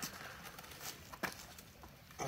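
Faint handling noise with a few light ticks as thin steel mechanics wire is wrapped around a split log by hand.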